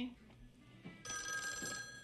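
Telephone ringing: a ring with several steady high tones starts about a second in and lasts to the end.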